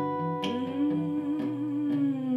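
Wordless sung note, hummed or sung on a vowel, held long and sliding up about half a second in, over a looped acoustic guitar pattern.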